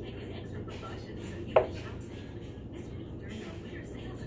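A thrown dart striking the dartboard once, about a second and a half in: a single sharp knock with a brief ring.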